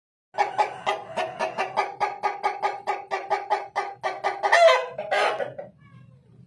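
Aseel rooster calling: a rapid string of short clucks at an even pitch, about five a second, for some four seconds, then one louder, longer call with a bending pitch that stops shortly before the end.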